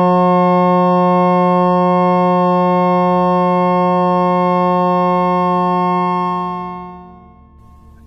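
A sustained electronic chord of steady pure tones at 180, 360, 540, 720, 900 and 1080 cycles per second, the lowest the loudest. Together they sound an F-sharp major chord of F-sharp, C-sharp and A-sharp. It holds steady, then fades away over the last two seconds.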